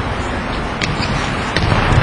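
Players' feet landing and stepping on a hard gym floor: a few sharp footfalls over a steady noisy hall background.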